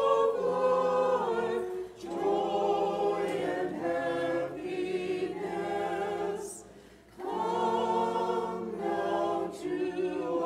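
A group of voices singing a liturgical chant unaccompanied. The sung phrases break off briefly about two seconds in and again around seven seconds in.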